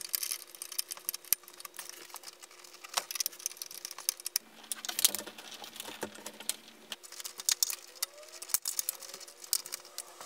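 Irregular small clicks, ticks and rustles of insulated wires being pushed and bent into a metal breaker panel and worked at its terminals, over a faint steady hum.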